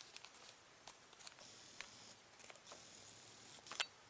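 Near silence with a few faint, short clicks and light handling sounds from a cardboard sticker card being held and shifted in the fingers, the loudest click just before the end.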